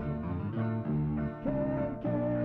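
Live song: acoustic guitar strummed under a singing voice, with a note held over the last half second.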